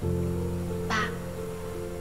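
Soft background music: a low sustained chord comes in at the start and holds. A brief sob is heard about a second in.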